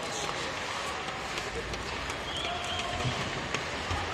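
Ice hockey arena ambience: scattered spectator chatter over a steady background hum of the crowd, with a few sharp clicks of sticks and puck on the ice.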